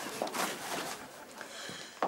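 Soft rustling of clothes being handled and packed, over quiet room noise.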